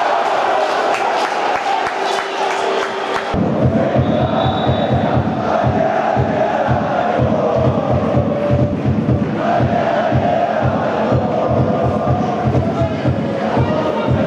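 Football crowd chanting in the stadium. After an abrupt cut about three seconds in, a steady low beat of about four strokes a second runs under the chanting.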